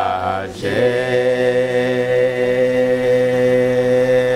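A small mixed choir of men's and women's voices singing in harmony, changing chord about half a second in and then holding one long sustained chord.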